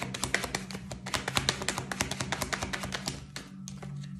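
A deck of tarot cards being shuffled by hand: a rapid run of papery card clicks that stops a little after three seconds. Steady background music plays underneath.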